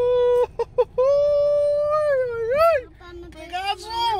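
A high-pitched voice drawing out long sung or exclaimed vowel notes: a held note, a few short blips, then a long note of about a second and a half that swoops up in pitch at its end, and a shorter rising note near the end.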